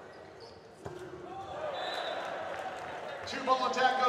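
A volleyball struck hard once, a sharp smack about a second in, echoing in a gym. Crowd noise and cheering follow and build toward the end.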